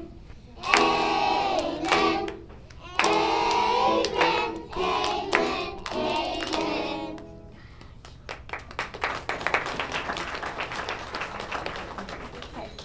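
A group of young children and adults singing a Christmas carol together in phrases; the song ends about seven and a half seconds in. Applause follows for the last few seconds.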